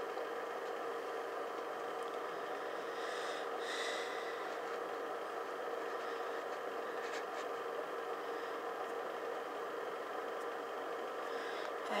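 A steady mechanical hum with a held tone in it, unchanging, with no voice.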